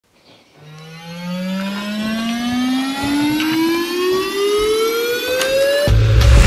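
An electronic rising-tone sound effect, like a riser in an intro: one pitched tone sliding steadily upward for about five seconds and swelling in volume. It cuts off abruptly near the end, where heavy bass music comes in.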